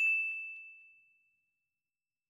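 A single notification-bell ding sound effect: one bright, high ring that fades out over about a second.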